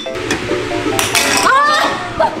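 Air hockey mallet and plastic puck clacking: a few sharp hits as the puck is struck and knocks against the table, over background music.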